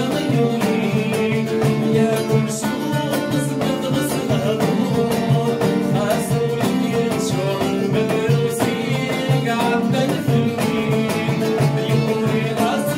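A man singing a Kabyle song, accompanied by a plucked mandole and a frame drum (bendir) beating a steady rhythm.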